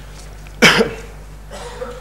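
A single short, sharp cough from a man about half a second in, over a steady low hum.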